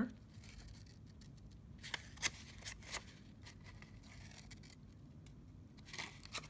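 Scissors snipping the covering paper a few times in quick succession around the middle, cutting in at an angle toward the corners of the mat-board cover. The snips are faint and short.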